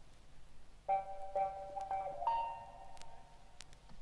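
Electric vibraphone playing four struck notes in quick succession, starting about a second in; each note rings on and fades, and the last is higher.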